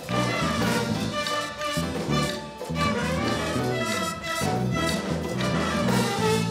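A live Latin band playing a salsa-style tune without vocals: trumpets and a trombone play over bass, piano, guitar and drums.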